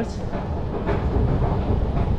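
Steady low rumble of a running London Underground escalator and the station around it, heard from someone riding up the escalator.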